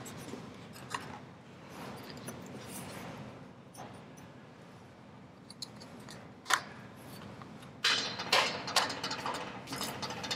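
Faint room tone with an odd small click, then near the end a run of small metallic clicks and rattles as a lathe's metal scroll chuck is handled, its key fitted and turned.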